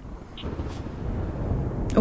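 Low thunder rumbling, steadily building in loudness, from the stormy opening of a music video soundtrack.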